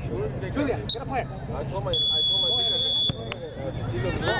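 Referee's whistle on a soccer pitch: a short high blip about a second in, then one long steady blast of a little over a second that cuts off suddenly, over sideline voices.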